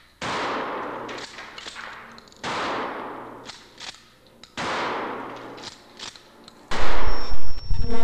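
Shotgun blasts fired at upright pianos in a recording studio. Three shots come about two seconds apart, each followed by a long fading ring. A louder burst with a heavy low end follows near the end.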